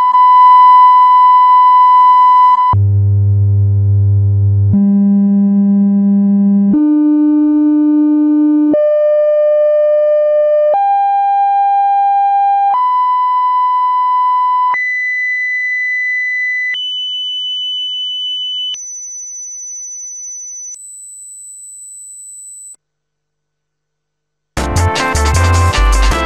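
Moscow city warning system technical test signal: a sequence of steady test tones. A mid-pitched tone held a few seconds gives way to a low buzzy hum, then the tones step up in pitch every two seconds or so, ten steps in all, to a very high whine. The tones grow quieter as they climb and stop shortly before the end.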